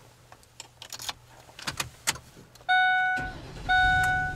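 Keys jangling and clicking in the ignition of a 2008 Ford E350 van. About three seconds in, the dashboard warning chime starts sounding in repeated tones about a second apart, and the 5.4-litre V8 cranks and starts, a low rumble under the chime.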